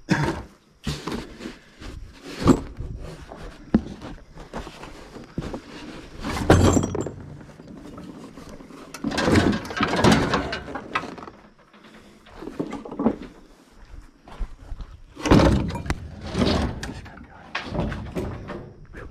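Scrap being handled: knocks, clatters and thuds come in several bursts, the biggest about two and a half seconds in, around six and a half seconds, around ten seconds and around fifteen to sixteen seconds.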